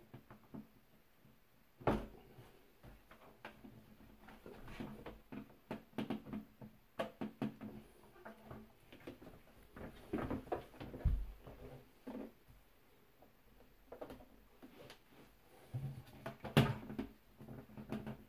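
Alpha Wave GXR-EW plastic bidet seat being pushed and settled onto its mounting bracket plate, its lid lifted and lowered: scattered plastic knocks and rubbing, the sharpest about two seconds in and near the end. No latching click is heard, though the seat is meant to click into place.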